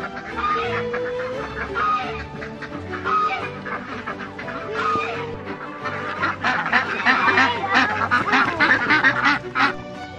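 A flock of ducks and chickens calling over background music, the quacking growing busier and denser in the second half.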